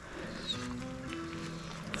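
Quiet background music with held notes that change pitch every half second or so.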